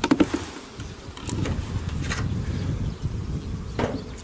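Carniolan honey bees buzzing steadily over an opened hive super, the frame top bars uncovered, with a few brief clicks and rustles of the hive cover being handled.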